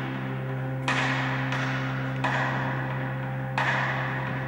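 Music from a male choir with electric keyboard accompaniment: a steady low chord held throughout, with a new sharp attack about every one and a half seconds that rings on and fades.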